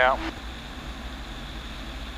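Citabria's engine and propeller running steadily at reduced approach power, heard as an even hiss with a low drone underneath.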